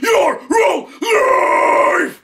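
A man's growled hardcore vocals, sung without any music: two short harsh bursts, then one long held scream from about a second in.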